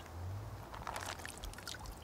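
Faint water trickling and dripping as a sealed zip-top bag of beef is lifted out of the water bath in a rice cooker, with a few small drip ticks in the second half.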